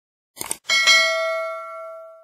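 Subscribe-button animation sound effect: a short mouse click about half a second in, then a bright bell ding that rings on and fades out over about a second and a half.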